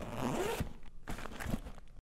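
Zipper sound effect: a backpack zip pulled open in two long rasping strokes, the second cutting off abruptly at the end.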